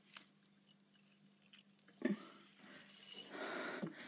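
Faint handling sounds close to the microphone: a sharp click just after the start and a few light ticks, then a knock about two seconds in followed by a soft rustle.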